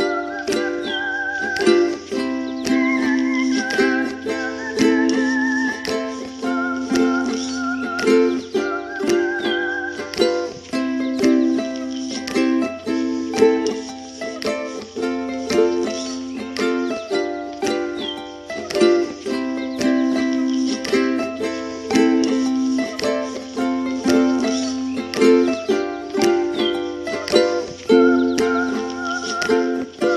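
Background music with a steady beat and a light melody of held notes.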